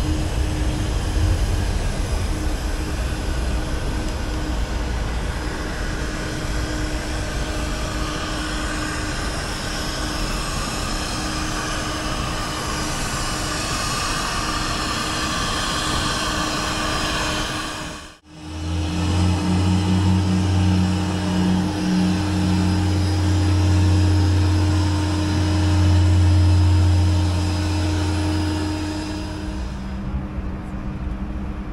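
Airport apron noise: steady whine and drone of parked aircraft and ground equipment running. An abrupt cut about eighteen seconds in is followed by a louder deep, steady hum.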